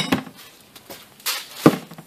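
A wrench clinking and knocking on the metal transmission case while a plastic output speed sensor is being snugged in: a few separate knocks, the sharpest about a second and a half in.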